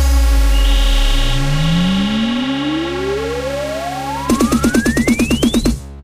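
Electronic hands-up dance track ending without vocals: a sustained synth chord under one long rising sweep. From about four seconds in, a rapid kick-drum roll of about seven hits a second builds up, and then the track stops abruptly.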